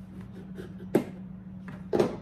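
Two sharp knocks about a second apart: a knife striking a cutting board as pollock fillets are cut into strips.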